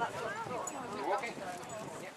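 Indistinct chatter of several people talking at once.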